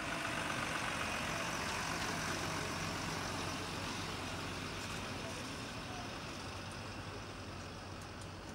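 Heavy lorry towing a fairground trailer drives slowly past at close range: a steady low diesel engine note under road and tyre noise, easing off gradually as it goes by.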